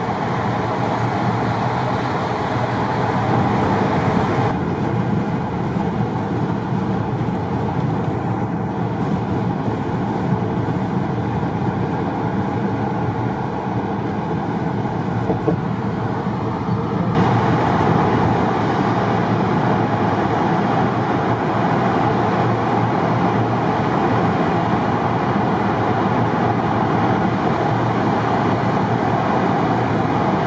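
Steady road and tyre noise of a moving car, heard from inside the cabin. The tone shifts about four seconds in, and the noise grows slightly louder after about seventeen seconds.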